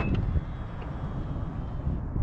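Power-folding side mirrors of a 2024 Mazda CX-90 unfolding as the car unlocks at a touch of the door handle, heard over a low wind rumble on the microphone. A short high beep sounds at the very start.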